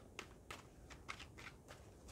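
Faint, soft clicks and flicks of a tarot deck being shuffled by hand, the cards slipping against each other every fraction of a second.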